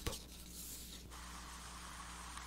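Faint steady hiss with a low electrical hum: the recording's background noise between spoken lines, the hiss growing slightly brighter about a second in.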